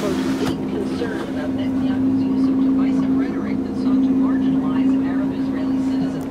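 A machine running with a steady drone at one unchanging pitch.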